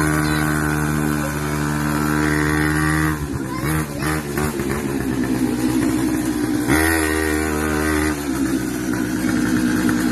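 Small kids' ATV engine running under throttle at a steady pitch, dropping off about three seconds in, then picking up again around seven seconds and easing back a second later.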